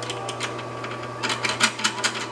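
A quick run of sharp metallic clicks in the second half, as a nut is worked onto a terminal stud of a battery bus bar, over a steady low hum.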